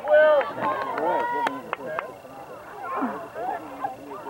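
Indistinct shouting and calling from several people at a lacrosse game, voices overlapping, with two sharp clicks about a second and a half in.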